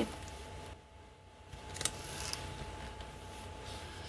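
Quiet handling of paper planner stickers: a soft click a little under two seconds in and a brief papery rustle just after, over a faint steady hum.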